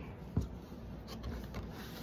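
Tarot cards being cut and handled on a wooden table: faint rubbing of cards with one light tap about half a second in.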